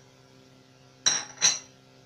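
Two sharp clinks of kitchen tableware, a metal spoon and dishes knocking together, about a third of a second apart and about a second in, each with a short bright ring.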